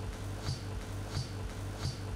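Steady low electrical hum with a sharp tick repeating evenly about one and a half times a second, and no voice coming through: a faulty audio feed.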